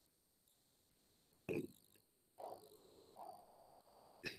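Near silence on an online call, broken by three faint, brief sounds about a second and a half, two and a half, and three seconds in; the first is the loudest.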